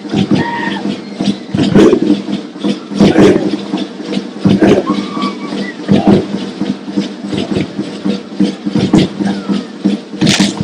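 Live Pacific island dance music: heavy percussive beats a little over a second apart, with group voices calling out between them.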